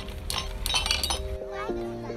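Metal bars of an outdoor playground xylophone struck with a mallet: a few clinking hits in the first second, over a background music track with a steady beat.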